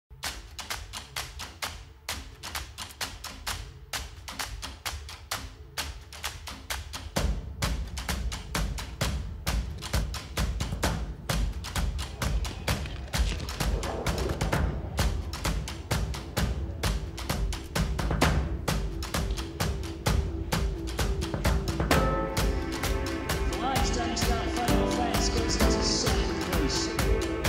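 Intro theme music with a steady percussive beat; a heavy bass layer comes in about a quarter of the way through, and sustained tones join near the end as it builds.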